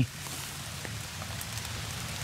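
Rain falling on leafy undergrowth: an even hiss with a few faint drop ticks.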